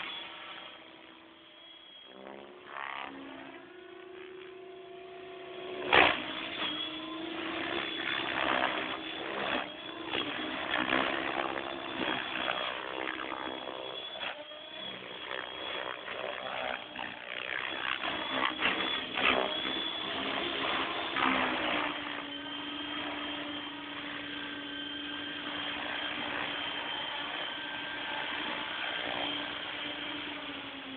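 Electric 700-size RC helicopter (Compass 6HV) flying: a steady motor-and-rotor whine, a single sharp crack about six seconds in, then rapidly changing rotor noise with many short swells through hard manoeuvres. From about two-thirds of the way through it settles into one steady hum as the helicopter sits with its rotor still spinning, the pitch sagging slightly at the very end.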